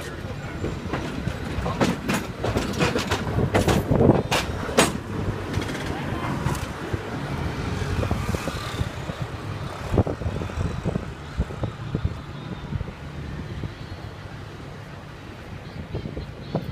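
San Francisco cable car clattering along its rails close by, with a run of sharp metal clanks in the first few seconds. It then settles into steadier rumbling street noise.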